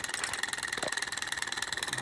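Small hot-air Stirling engine running, its crank and flywheel giving a steady whir with fast, even ticking and a faint high whine. It is running slowly, held back by friction.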